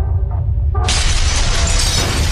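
Intro-animation sound effect: a deep rumble, then, less than a second in, a sudden loud crash of shattering debris that keeps on rumbling and crackling.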